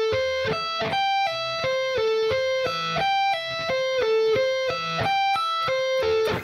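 Music Man Majesty electric guitar playing a sweep-picked arpeggio fragment that includes a pull-off and a turn of the pick direction after the second string. Single notes follow one another a few per second, each cleanly separated, the same short pattern repeated several times.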